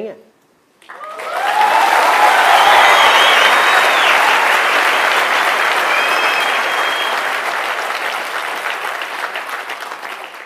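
Large audience applauding. It breaks out about a second in, swells quickly, then slowly dies away, with a few cheers and whistles above the clapping.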